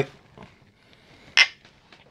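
Drinking glasses meeting in one short, sharp clink about one and a half seconds in; otherwise a quiet room.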